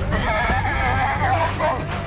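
Spotted hyena crying with a wavering, bending pitch as it struggles, over a film score with a steady low rumble underneath.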